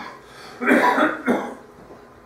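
A woman coughing twice, about half a second apart.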